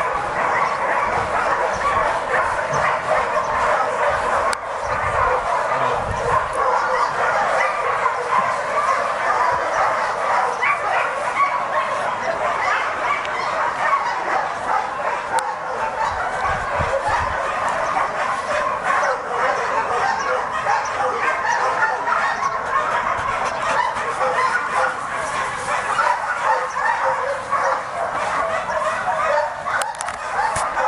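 Many dogs barking and yelping at once in a dense, unbroken chorus, as from a dog shelter's kennels.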